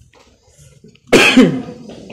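A single loud cough about a second in, sharp at the start and falling away within half a second.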